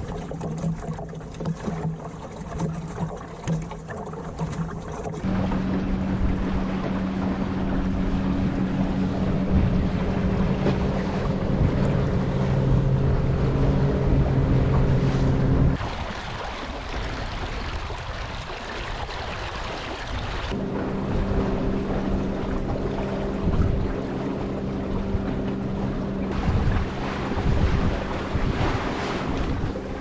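Water rushing and splashing past the hull of a small sailing dinghy under way, with wind buffeting the microphone.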